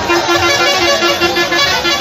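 A truck horn sounding in a quick run of short, evenly spaced blasts over the noise of a crowd.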